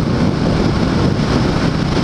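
Wind rushing over the microphone of a motorcycle at highway speed, over the steady running of a 2013 Honda Shadow 750's V-twin engine.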